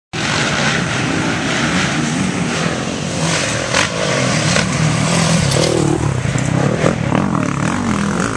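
Motocross dirt bike engines running hard at high revs, a loud, steady, rough engine noise with a few sharp cracks mixed in.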